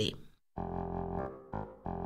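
Musical intro on a reedy, organ-like instrument standing in for a hand-cranked barrel organ: held chords after a brief pause, breaking off and starting a new chord near the end. The tail of a woman's narration comes just before.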